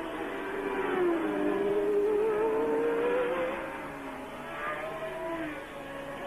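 1982 McLaren Formula One car's Ford-Cosworth DFV V8 at full throttle, its note climbing steadily as it accelerates, with other engine notes dropping in pitch as cars pass by.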